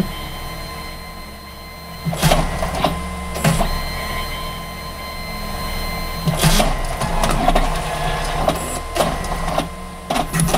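DNP QW410 dye-sublimation photo printer running through a print: a steady motor whine with sharp mechanical clicks about two, three and a half and six and a half seconds in.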